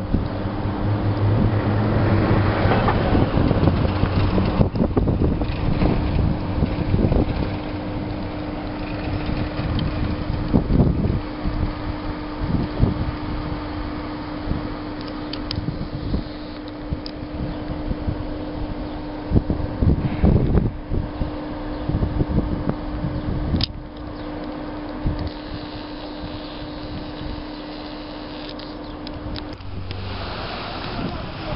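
Wind buffeting the microphone outdoors, gusting unevenly with scattered thumps, over a thin steady hum that stops near the end.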